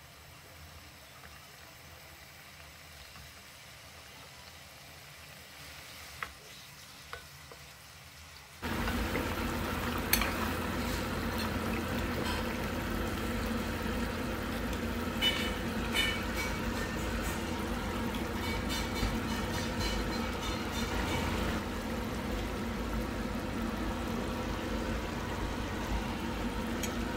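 Fish curry simmering in a pan on a gas stove, with a few sharp clinks of a metal ladle against the pan. The first several seconds are quiet apart from a couple of faint clicks. The steady bubbling sizzle comes in suddenly about nine seconds in.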